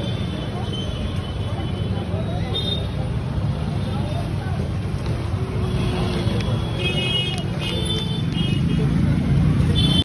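Steady street traffic rumble with voices in the background, and several short, high vehicle horn toots about seven to nine seconds in.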